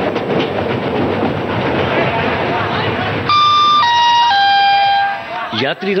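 Railway station ambience with train noise for about three seconds, then a three-note descending electronic chime of the kind that opens an Indian railway station announcement, with an announcer's voice starting just after it.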